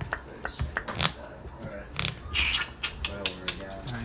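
Trading cards being handled on a playmat: irregular clicks and taps as cards are picked up and set down, with a brief swish about halfway through.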